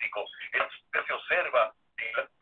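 A person speaking Spanish over a telephone line, the voice thin and narrow-sounding, in quick syllables with short pauses.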